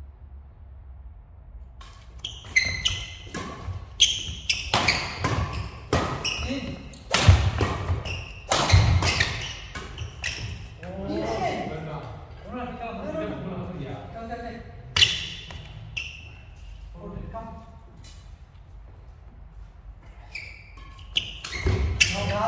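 Badminton rally: sharp racket strikes on the shuttlecock in quick succession for several seconds, with players' shoes on the court, echoing in a large hall. Players' voices follow after the rally.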